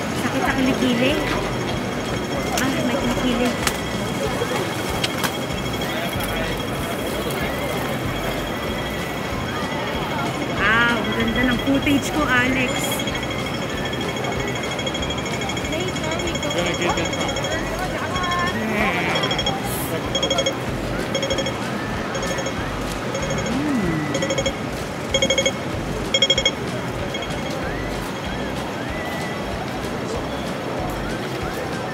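Busy city-street ambience: a crowd's chatter with traffic. From about twenty seconds in, a run of short electronic beeps repeats for several seconds.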